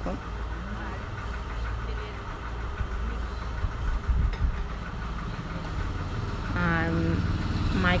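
A steady low mechanical hum, like a motor or engine running at idle. A woman's voice starts again about six and a half seconds in.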